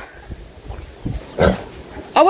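Pig in a pen grunting: one short, louder grunt about one and a half seconds in, over fainter low sounds.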